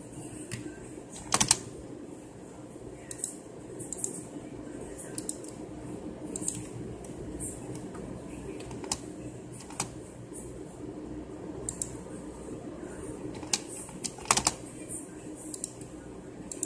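Scattered clicks of a computer keyboard and mouse, a few at a time with pauses between, over a steady low hum.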